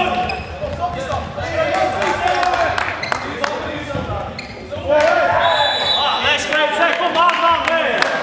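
Futsal being played in a large sports hall: the ball knocks off feet and the wooden floor again and again, with players calling out over it, all echoing in the hall. It gets louder about five seconds in.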